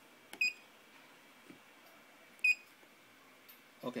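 Electronic diagnostic scan tool giving two short, high beeps about two seconds apart.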